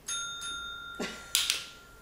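A small push-top dinner bell struck once, most likely by the cat's paw. It gives a single bright ding that rings on and fades slowly over almost two seconds.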